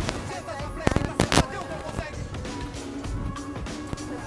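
Background music with faint voices, and three sharp cracks about a second in.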